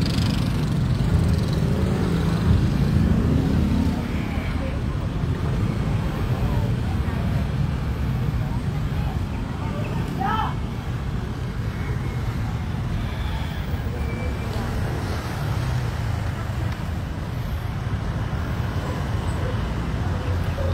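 Steady low rumble of road traffic, with a brief higher sound about halfway through.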